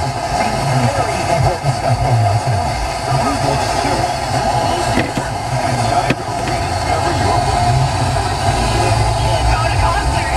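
Car FM radio tuned to 106.5 picking up a weak, distant station: a garbled broadcast voice buried in static and interference, over the low rumble of the car.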